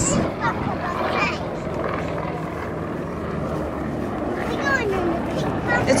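Yak-52's nine-cylinder radial engine and propeller droning steadily as the aerobatic plane flies by overhead, with a public-address commentator's voice in the background near the start and just before the end.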